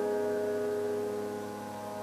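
A held piano chord slowly dying away.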